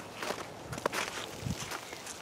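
A few soft footsteps on snowy ground, faint and irregular.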